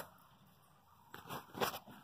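Handling noise from a phone camera being turned in a gloved hand: almost nothing for the first second, then a few faint, short crunching and rustling sounds.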